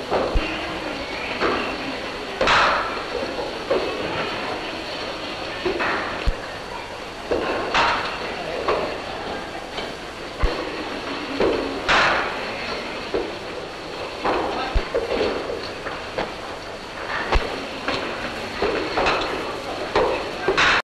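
Cricket balls striking bats and netting in indoor practice nets, a sharp knock every two to four seconds, over the murmur of onlookers and the hiss and crackle of an old optical film soundtrack.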